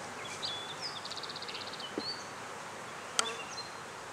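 Honeybees buzzing steadily around an opened hive, with a songbird's short chirps and a quick high trill in the background about a second in. There is one sharp click a little after three seconds.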